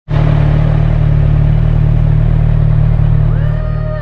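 Motorcycle engine running steadily at idle, a loud low rumble. Music fades in near the end with a rising, gliding tone.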